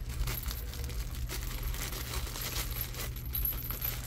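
A small metal jingle bell jingling in short, light bursts as the tulle ribbon it is tied to is untied, with light crinkling of a cellophane treat bag.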